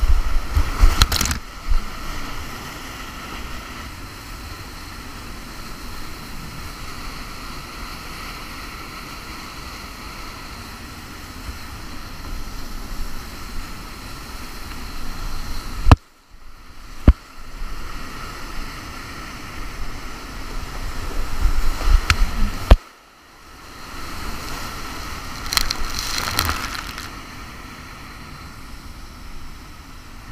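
Whitewater rapids rushing close to the microphone of a kayak-mounted camera, with loud splashes of water hitting the lens near the start, about halfway, and again later. The sound nearly cuts out twice, briefly, about halfway and two-thirds of the way through.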